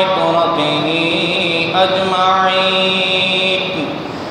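A man's voice reciting the Quran in a slow, melodic chant, holding long notes that shift in pitch about half a second in and again just before two seconds; the phrase tapers off and falls in pitch near the end.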